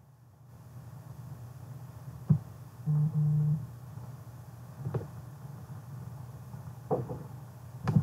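A live microphone feed switches on, carrying a steady low hum. Four sharp knocks are spread through it, and two short low tones sound back to back about three seconds in.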